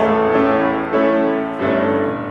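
Grand piano playing a short solo passage between sung verses, a few chords struck in turn and left ringing.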